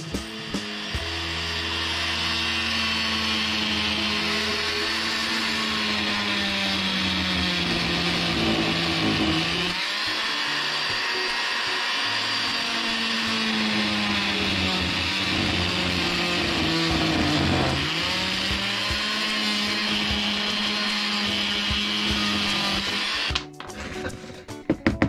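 Oscillating multi-tool with a plunge-cut blade running and cutting into a wooden block: a steady high buzz that sags in pitch twice, around ten and eighteen seconds in, as the blade bites in under load, then recovers and stops shortly before the end.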